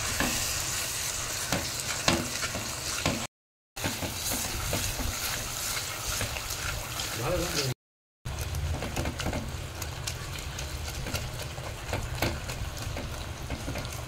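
A thick mash of seeded banana and potato sizzling in a clay pot while a wire whisk stirs and presses it, with small scraping clicks of the whisk against the pot. The sound cuts out to silence twice, briefly.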